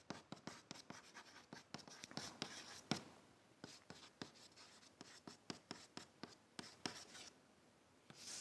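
Chalk writing on a blackboard: a run of faint, irregular taps and short scrapes as words are chalked up.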